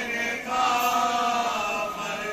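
Men chanting a marsiya, an Urdu elegy, with no instruments: the lead reciter sings at the microphone with several young men singing along in unison. About half a second in they move onto a long held note.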